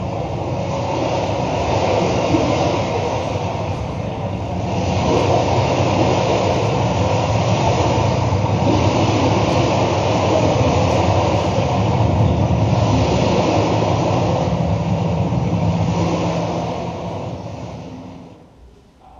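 A loud, steady noise with no clear pitch, a recorded sound effect played through the hall's speakers, growing louder about five seconds in and fading out near the end.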